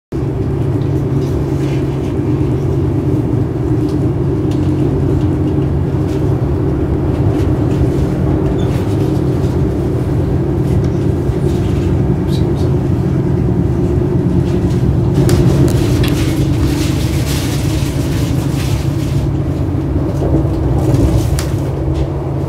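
Steady running rumble heard inside a moving Swiss SBB panorama passenger coach. Short light clicks and rattles come in over it during the last third.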